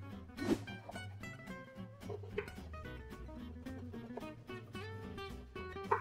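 Background music led by plucked guitar, with a few brief knife cuts through fennel onto a wooden chopping board.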